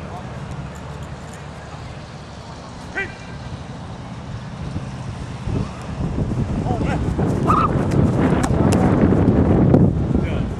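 Indistinct distant shouts and voices across an open practice field, with one short call about three seconds in and a few more later, over a low rumble of wind on the microphone. The overall noise grows louder over the last few seconds.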